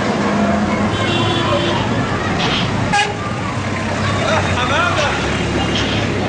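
A coach bus engine running with street traffic around it, a short vehicle horn toot about a second in, and people's voices and shouts.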